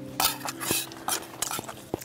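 Chopsticks and spoons clinking and scraping against metal camping bowls and a pot while ramen is eaten and served: several light, irregular clinks.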